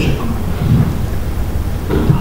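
A steady low rumble under a man's voice heard through a handheld microphone. His word trails off at the start, and a short low murmur of hesitation follows under a second in.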